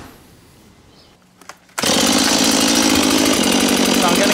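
Quiet background with a couple of faint clicks, then a little under two seconds in a Stihl chainsaw comes in suddenly and loud and keeps running steadily.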